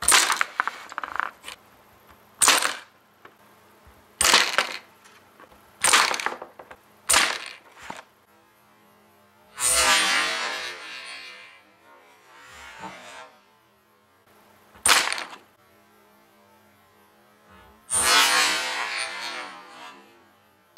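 A small 3D-printed PLA coin ballista being fired over and over with rubber bands, shooting dimes: a series of sharp clacks, six or so, spread unevenly. Two longer rustling noises come between them.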